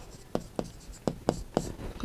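Writing on a green board: a run of short taps and scratchy strokes as the characters are written, about eight in two seconds.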